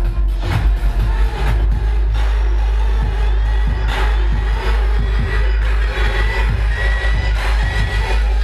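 Loud electronic dance music with a heavy, continuous bass beat, played in a DJ set over a nightclub sound system. A high sustained tone enters about halfway through and carries on to the end.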